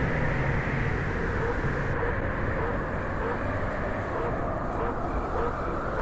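Steady low background rumble with no clear tone, like traffic or engine noise in a field recording.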